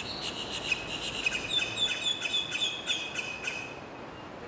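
A songbird singing a quick, even series of repeated chirps, about four a second, that stops shortly before the end.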